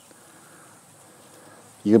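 Faint, steady insect buzzing in quiet open-air ambience, with a man's voice starting near the end.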